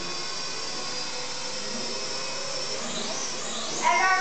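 Snaptain S5C toy quadcopter's small electric motors and propellers running steadily in flight, a constant high whine.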